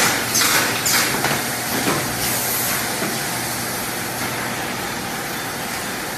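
Automatic sachet packaging and cartoning machinery running: a steady mechanical noise, with a few short bursts of hiss in the first three seconds.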